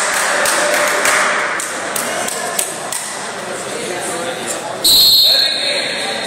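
Referee's whistle, one short loud blast about five seconds in, restarting the wrestling bout. Before it, indistinct voices echo in a large gym.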